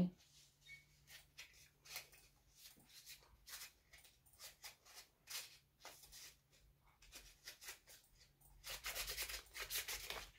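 Faint rustling and rubbing of cardstock being handled, with scattered light clicks. Near the end, a quick run of short snips as scissors trim the cardstock.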